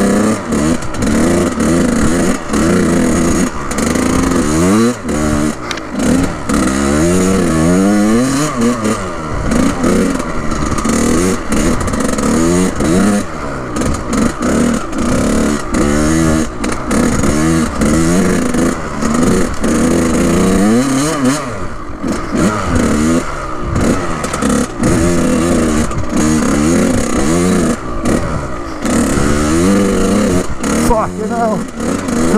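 Kawasaki KX100 two-stroke dirt bike engine ridden hard along a trail, its pitch climbing and dropping over and over as the throttle is opened and shut.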